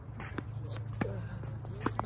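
A ball is struck back and forth in a fast doubles rally, making three sharp, ringing hits about half a second to a second apart, the loudest near the end.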